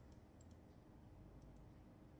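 Near silence: faint room tone with a few faint clicks about half a second in.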